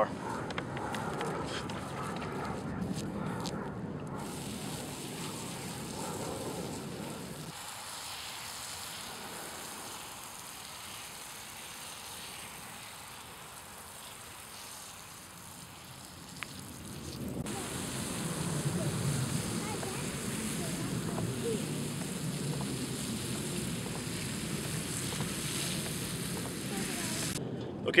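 Backpack sprayer wand spraying liquid onto mulched garden soil, a steady hiss that drops lower through the middle and comes back fuller later on.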